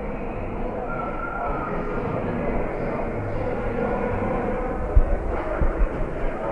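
Ice-rink arena ambience during a stoppage in play: a steady murmur of crowd and distant voices with general rink noise. A single short knock comes about five seconds in.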